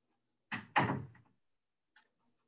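A room door being pushed shut: a light knock, then a louder thud about a quarter second later as it closes.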